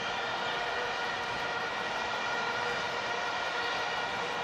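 Stadium crowd noise with a steady, unbroken drone of vuvuzelas held over it.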